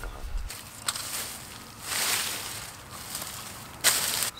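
Garden fork raking and dragging dry hay and compost across a compost pile: rustling scrapes that come and go, a longer swell about two seconds in and a sharp, loud scrape near the end.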